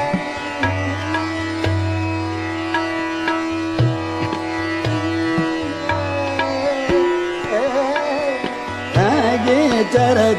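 Hindustani classical khayal in Raag Khat: tabla keeping a medium-tempo jhaptaal with repeated deep bass strokes, over a tanpura drone and harmonium. A long steady note is held through the first half, then the voice moves in gliding ornamented phrases that come in louder about nine seconds in.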